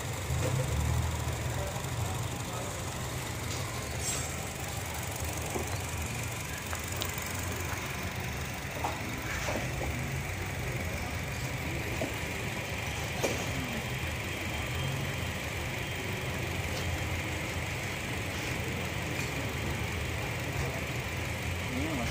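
Honda Jazz GE8's four-cylinder engine idling steadily with its hood open, a low even hum, with a few faint clicks now and then.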